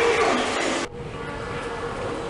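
Busy airport terminal ambience with voices cuts off abruptly about a second in, giving way to the steady mechanical hum of a moving walkway (travelator) running.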